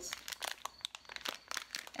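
Plastic bag of lentils crinkling as it is handled, a quick run of irregular crackles.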